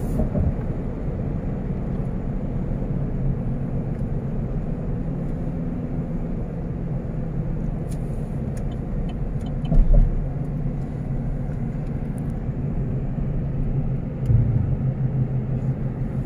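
A car driving along a highway, heard from inside the cabin: a steady low rumble of tyres and engine. There is a short low thump about ten seconds in and a brief rise in the rumble near the end.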